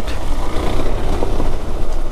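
KTM 390 Adventure's single-cylinder engine running as the motorcycle rides a rocky, muddy trail, under a steady low rumble.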